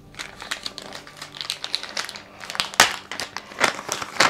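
Irregular crinkling and crackling of something being handled by hand close by, with one louder sharp crackle a little before three seconds in.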